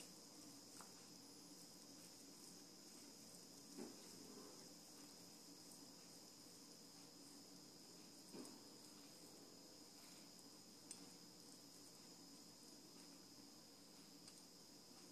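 Near silence: room tone with a faint steady high whine and a few very soft, brief sounds.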